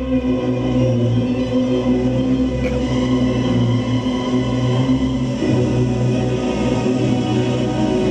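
Music for a stage dance number, with a choir singing over the accompaniment in sustained, steady notes.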